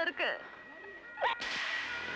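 A sharp whip-like swish a little past the middle, followed by a steady hiss with a thin held tone.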